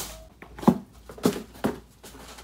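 Three dull thumps of a person moving quickly about a small room, the first and loudest less than a second in, then two more close together: his body and feet striking the floor and bed.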